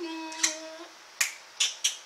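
Four sharp finger snaps, irregularly spaced, the last three coming closer together. A short held note is hummed through the first second, under the first snap.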